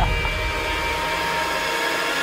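A steady whooshing noise with faint held tones, even in level, as in a drama's background sound bed; the last of a laugh is heard at the very start.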